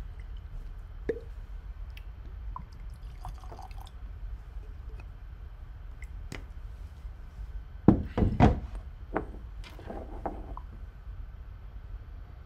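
Whiskey poured from a bottle into a glass tasting glass, with small glass clicks. About eight seconds in, a few louder knocks, the loudest sounds here, with more lighter ones after.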